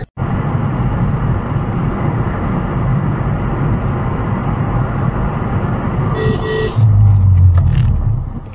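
Steady road and engine noise of a car driving at highway speed, heard from inside. About six seconds in a car horn gives a short honk, followed at once by a loud low rumble lasting nearly a second.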